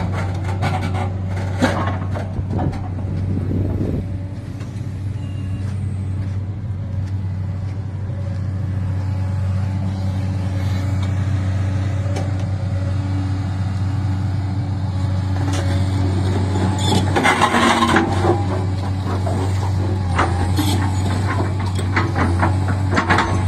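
JCB 380 tracked excavator's diesel engine running under load, a steady low drone, as its bucket pushes a large marble block across sandy ground. Rough scraping and clanking of steel and stone come and go over it, loudest a little past three-quarters of the way through.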